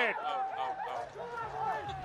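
Several cricketers on the field shouting and whooping together, celebrating a run-out by a direct hit on the stumps.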